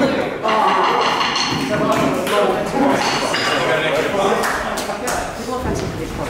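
Several people talking at once, with a few light knocks and clicks of equipment.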